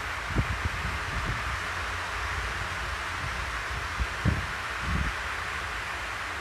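Steady background hiss with a few soft, low thumps, about half a second in and again a little after four and five seconds: a clip-on microphone brushing against cloth.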